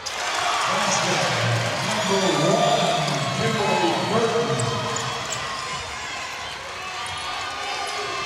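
Arena crowd cheering and shouting after a made basket, swelling in the first few seconds and then easing off.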